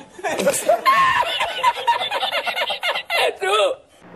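A man laughing hard, in long high-pitched bursts with short breaks between them.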